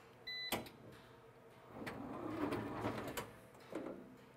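Electronic tool cabinet's motorized vertical carousel turning to bring up the next tool tray: a short beep and a sharp click about half a second in, then a rough mechanical whirring with ticks for about a second and a half, and a smaller knock as it settles near the end.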